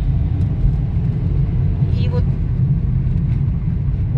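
Steady low rumble of a car's engine and tyres on the road, heard inside the moving car, with a short vocal sound about two seconds in.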